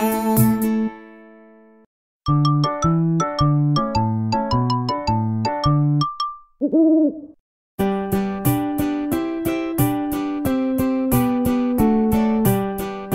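Children's music: the last chord of a song fades out about a second in, and after a short pause a jingle of quick plucked notes plays. Then comes a single cartoon owl hoot that rises and falls, and at about eight seconds an upbeat plucked-string intro starts the next song.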